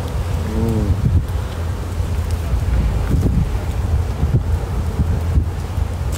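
Wind buffeting a phone microphone outdoors, a steady low rumble, with a brief hum from a man's voice a little under a second in.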